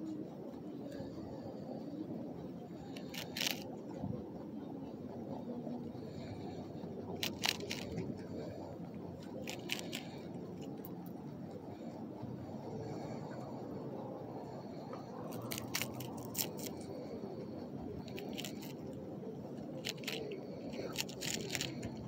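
Rabbit biting and chewing crisp lettuce leaves, with short bursts of crunching every few seconds over steady low background noise.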